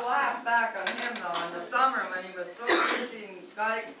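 Speech: a man talking to an audience in a hall, with a brief harsh burst of noise nearly three seconds in.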